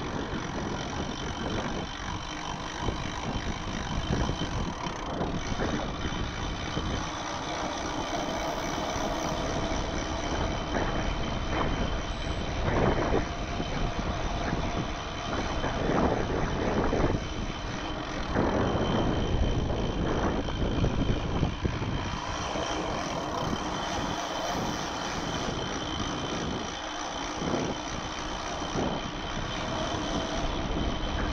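Wind rushing over the action camera's microphone, mixed with mountain-bike tyres rolling on asphalt on a downhill ride, swelling and easing irregularly, with the strongest gusts in the middle.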